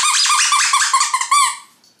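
Squeaky plush turkey dog toy squeaked rapidly, about seven short high squeaks in a row, ending with a longer one about a second and a half in.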